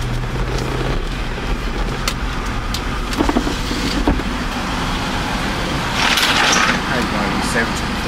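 Car engine and road noise heard from inside the cabin as the vehicle rolls slowly forward, a steady low rumble. A short rush of noise comes about six seconds in.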